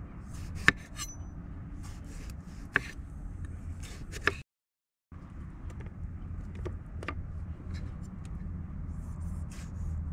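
Kitchen knife slicing Roma tomatoes on a bamboo cutting board: a few sharp clicks of the blade meeting the board, a second or two apart, over a low steady hum. The sound drops out completely for about half a second just after the middle.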